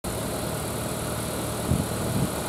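VW Golf GTI's 2.0 TSI four-cylinder turbocharged petrol engine idling steadily with the bonnet open.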